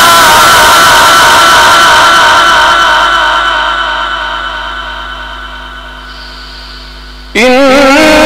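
Quran recitation (tajweed) through a loudspeaker system: the reciter holds one long melodic note with wavering pitch that slowly fades away, then a new phrase starts loudly a little before the end.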